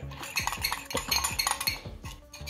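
Metal spoon stirring a dry spice blend in a glass bowl, scraping and clinking repeatedly against the glass.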